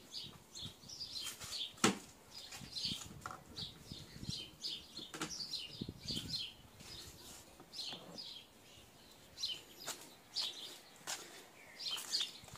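Small birds chirping over and over, with a few sharp clicks, the loudest about two seconds in.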